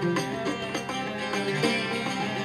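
Oud played with a plectrum in a run of plucked notes, part of live acoustic ensemble music.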